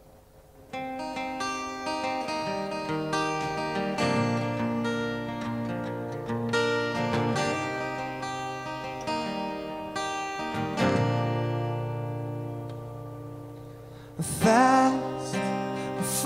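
Steel-string acoustic guitar, capoed, playing a solo intro of ringing chords that begins about a second in and fades slightly before a man's voice starts singing over it near the end.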